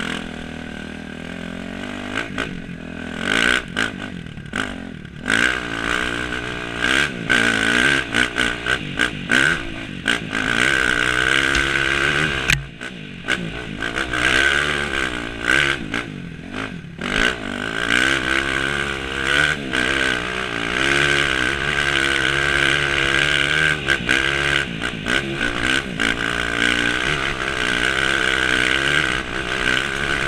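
Dirt bike engine working uphill on a trail, its revs rising and falling constantly, with the throttle briefly shut off several times.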